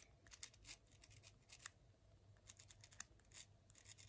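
Faint, irregular scratches and ticks of a multi-colour ballpoint pen worked against a dried bay leaf, its tip failing to lay down ink.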